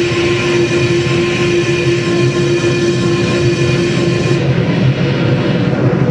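Loud live electronic noise: a dense, rumbling wash of sound with a steady held tone under it. About four and a half seconds in, the tone stops and the high end is cut off, leaving a duller rumble.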